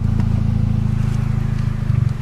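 Car engine idling with a steady low hum, heard from inside the stopped car's cabin.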